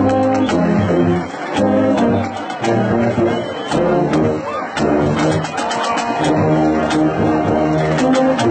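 A band playing a song: held, stacked notes changing chord in a steady rhythm over a regular percussive beat.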